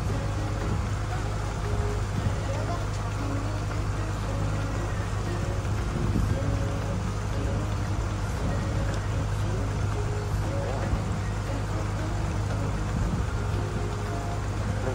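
Resort launch boat's engine running steadily under way, a constant low hum, with voices and music in the background.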